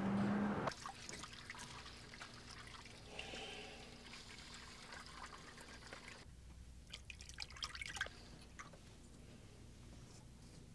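Loud background noise with a steady low hum cuts off suddenly under a second in. It gives way to quiet bathroom sounds: water dripping and trickling at a sink, with small clicks and taps clustered around the seventh and eighth seconds as shaving foam is worked onto a face and a razor is used.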